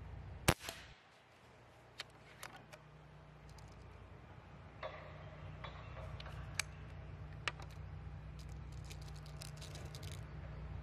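A single shot from a sub-500 fps .22 Reximex Throne Gen2 PCP air rifle, one sharp crack about half a second in. Scattered clicks follow as the rifle is handled for reloading, then a quick run of ticks near the end as pellets are picked out of a tin.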